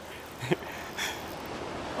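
Steady wind and sea noise on the shore, with a brief rising vocal sound about half a second in.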